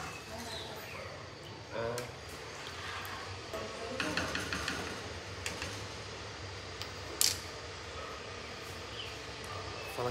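A plastic spoon stirring liquid dye in a metal pot, with a sharp tap about seven seconds in.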